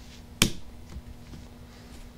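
The plastic rocker actuator of a Carling rocker switch snapping off the switch body with one sharp click, about half a second in.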